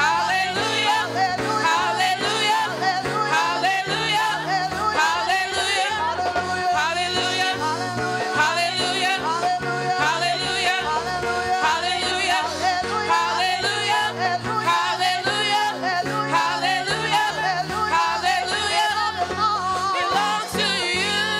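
A group of women singing a worship song together into microphones, their voices amplified and full of vibrato, over steady instrumental accompaniment.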